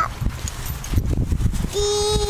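Low, uneven thuds and rumble from the moving horse's gait, then about three-quarters of the way through, a young child's long held "aaah" on one steady pitch, faintly wavering as she is jostled.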